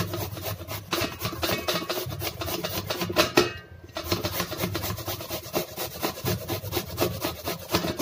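A vegetable being grated by hand on a stainless steel grater: quick, even rasping strokes, with a short pause a little past three seconds.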